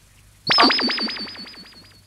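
Synthesized cartoon sound effect. It starts about half a second in: a high, slightly wavering tone over a fast run of falling chirps, about eight a second, that fade away.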